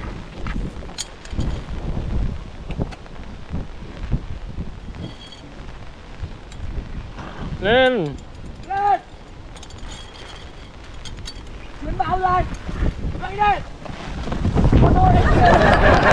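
Storm wind buffeting the microphone, building to a strong gust near the end, the loudest part. About halfway through come four short rising-and-falling whoops from a person's voice.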